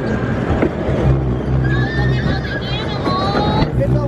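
A horse whinny, heard as a warbling high call about two seconds in, over a steady low hum that starts about a second in from the kiddie tractor ride.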